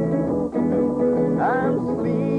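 Acoustic guitar strummed in steady chords, playing a song's accompaniment.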